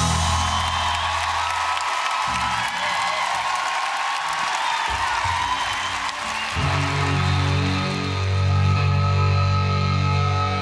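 Amplified cellos of a cello metal band playing live. The low notes drop out about two seconds in, leaving higher held lines for a few seconds, and the heavy low part comes back after about six and a half seconds.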